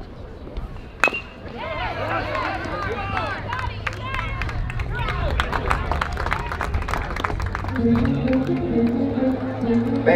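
A metal baseball bat strikes a pitch with a sharp ping about a second in. Shouting and cheering voices follow.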